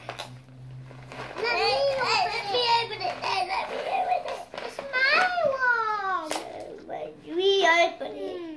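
Young children talking in high-pitched voices, their words unclear, with a sharp click a little past six seconds in.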